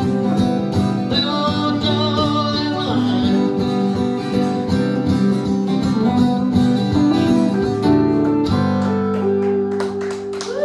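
A small band playing a song live: a strummed acoustic guitar and a hollow-body electric guitar, with a keyboard behind them.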